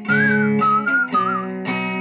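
Guitar music in an instrumental passage: chords struck every half second or so under a high lead line that wavers and slides in pitch.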